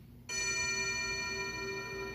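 A sustained ringing tone from a movie trailer's studio-logo sting starts suddenly about a quarter second in and holds steady.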